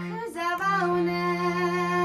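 High female voice singing a Boro khuga methai folk song, with a short break about half a second in and then one long held note, over a steady harmonium drone.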